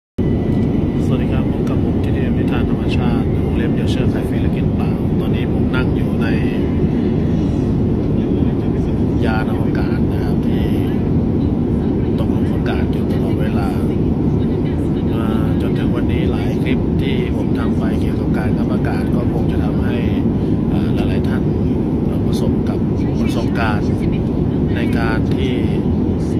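A steady, loud low rumble runs throughout, with a man's voice talking over it in short stretches.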